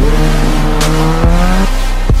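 A sport motorcycle's engine revving, its pitch rising steadily for about a second and a half and then cutting off. Thuds of an electronic music beat land at the start and about a second in.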